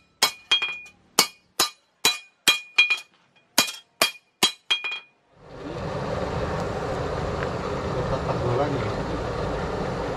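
Hand hammer striking a golok blank of car leaf-spring steel on a steel anvil: about a dozen ringing blows, a little over two a second. About five seconds in the blows stop and a steady rush of air blown through the burning coal forge takes over.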